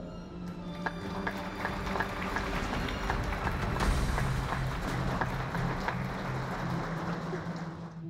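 Audience applauding, a dense patter of many hands clapping that builds about a second in and thins near the end, with background music underneath.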